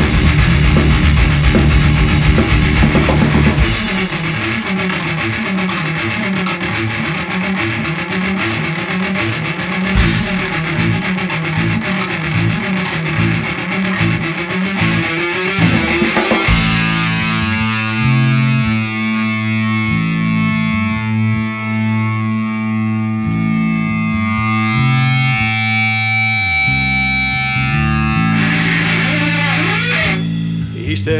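Instrumental break of a rock song led by guitar, with no singing. A loud, dense full-band passage drops back after about four seconds, and from about halfway the music turns to long held chords.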